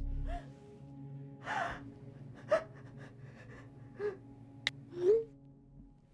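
A frightened woman gasping and whimpering in several short breaths about a second apart while held by the throat. A single sharp click comes near the end.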